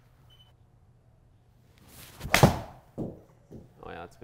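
A seven-iron strikes a Callaway Chrome Soft golf ball about two and a half seconds in: one sharp, loud impact in a small indoor hitting bay. A few fainter knocks follow.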